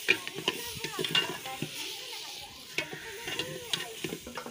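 A metal spoon stirring and scraping halwa in an aluminium pot, with irregular clinks and scrapes against the pot. A steady sizzle of the cooking mixture runs underneath.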